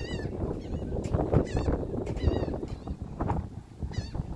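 Wind buffeting the microphone, a steady uneven rumble, with a few short high chirps in the background.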